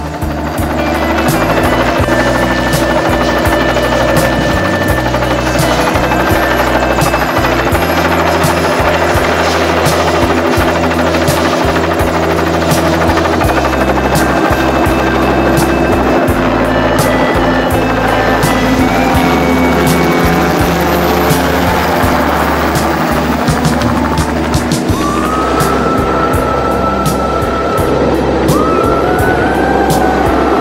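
Background music with a stepping bass line, mixed with a helicopter's rotor and engine as it lifts off and flies.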